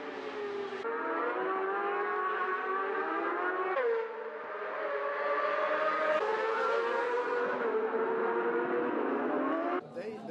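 Several supersport racing motorcycles at high revs, engine notes climbing with the throttle and dropping through gear changes, with one sharp fall in pitch about four seconds in as a bike passes. Near the end the engine sound cuts away abruptly.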